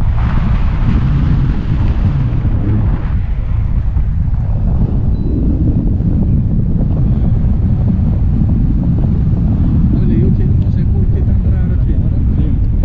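Wind buffeting the action camera's microphone in flight under a tandem paraglider, a loud, steady low rumble.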